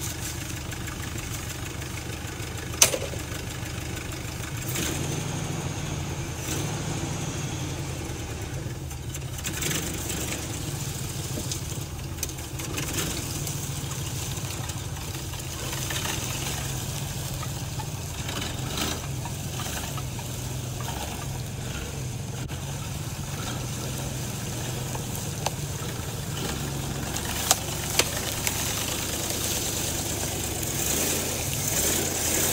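The engine of a 1979 Ford F100 pickup, just revived after sitting abandoned, running at a steady idle. There is one sharp knock about three seconds in, and the engine note grows a little fuller from about five seconds in.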